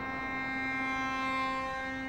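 Cello music: one long bowed note held steady.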